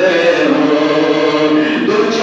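A man's voice chanting a devotional Urdu verse in long held notes into a microphone, amplified over loudspeakers.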